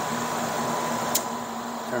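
Steady machinery hum and fan-like noise of running electrical equipment, with a faint constant tone through it. A single sharp click about a second in.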